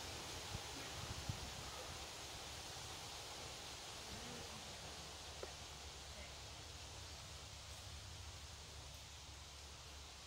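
Quiet outdoor ambience: a steady low hiss and rumble, with a few faint ticks in the first second and a half and another about five seconds in.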